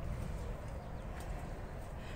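Faint, steady low background noise with no distinct sound events: the ambience of a greenhouse.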